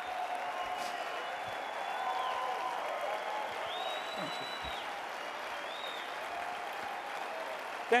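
Large audience applauding steadily, with a few voices calling out over the clapping.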